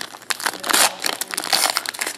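Foil trading-card pack wrapper crinkling and crackling as it is pulled open by hand, a dense run of sharp crackles.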